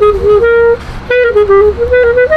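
Solo clarinet playing a klezmer melody, one note line gliding between held notes, with a short break about a second in. A low rumble sits faintly underneath.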